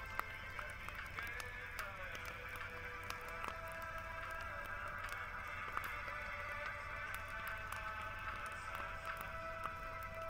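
Music with long held notes, over scattered sharp pops and crackles from a burning wood bonfire.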